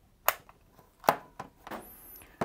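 Two sharp plastic clicks followed by a few lighter knocks from handling the hard plastic case of a hand-held field strength meter. Its battery cover is pressed shut and the case is turned over on a wooden tabletop.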